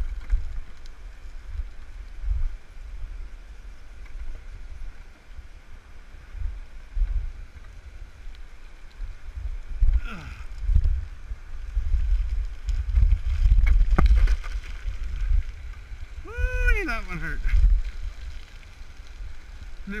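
Irregular low rumbling buffets of wind and movement on a head-mounted camera's microphone as the wearer walks down a dirt forest trail, over a faint steady rush of the river below. About three-quarters through, a short wordless vocal sound rises and falls in pitch.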